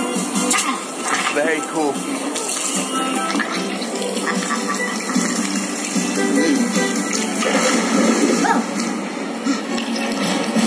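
Soundtrack of a projection-mapped dinner show playing through the room's speakers: music mixed with cartoon sound effects, including water-like swishing, and voices.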